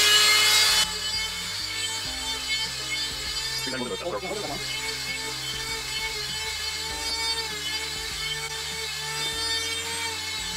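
Dremel rotary tool on a flexible shaft whining as it sands the corners of EVA foam pieces. It is loud for under a second, then continues quieter and steady beneath background music.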